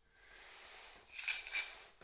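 Faint rustling from a golfer's movement in a padded nylon jacket while he handles a golf club, with two soft swishes a little over a second in.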